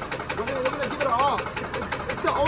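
Chevrolet Silverado V6 engine idling with a rapid, even knock, about seven a second. The engine was run for a year without oil changes and is pretty much done.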